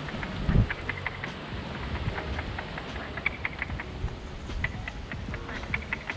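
Scattered drips and ticks of water as the rain tapers off, over a low rumble of wind on the microphone, with one dull thump about half a second in.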